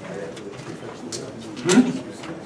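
Low murmur of people talking in a meeting room, with one short, louder low vocal sound near the end.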